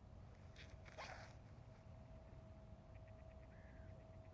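Near silence with a low outdoor rumble and a faint steady hum. About a second in comes a brief rustle, and near the end a run of faint quick ticks and a short chirp.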